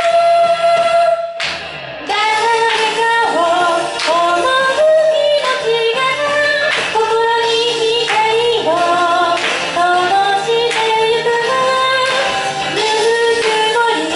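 A woman singing a song live into a microphone over an accompaniment with a steady, regular beat. Her voice breaks off briefly about a second and a half in, then carries on.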